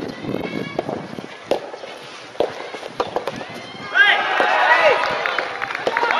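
Scattered sharp pops of rubber soft tennis balls being struck, with a burst of many voices shouting and cheering from about four seconds in, the loudest part.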